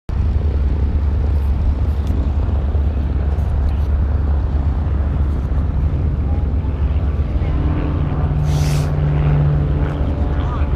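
Low rumbling wind buffeting the microphone of a moving camera. A steady engine hum comes in about seven and a half seconds in, and there is a brief hiss near the end.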